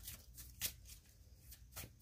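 Tarot cards being shuffled by hand: a few faint, scattered taps and flicks of card stock.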